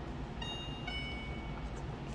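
Soft bell-like chime notes, two struck about half a second apart and left ringing, over a low steady hum.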